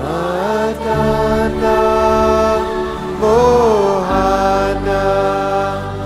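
A man's voice singing a devotional mantra chant in long, gliding sung notes over sustained instrumental chords that change about a second in and again about four seconds in.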